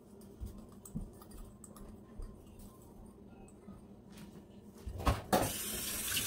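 A few light knocks of kitchenware being handled, then about five seconds in a knock and a kitchen tap starting to run into a sink with a steady rush of water.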